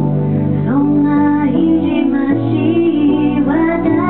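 A woman singing while accompanying herself on piano. Her voice slides up into long held notes about a second in and again near the end, over sustained piano chords.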